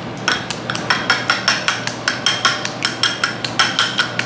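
Wooden chopsticks beating raw egg in a small glass bowl, clicking against the glass about five times a second with a light ring.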